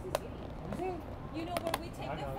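Clear plastic takeout container lid clicking and crackling as it is pried open: one sharp snap just after the start and a few more clicks about three-quarters of the way through. Faint voices in the background.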